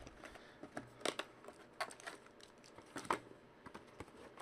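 Hands handling a cardboard hobby box and foil-wrapped trading-card packs: irregular crinkles and small sharp clicks, a few louder ones near the start, about a second in and about three seconds in.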